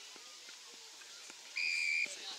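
Umpire's pea whistle blown once, a short, steady, shrill blast of about half a second near the end, signalling a stoppage in play at a tackle.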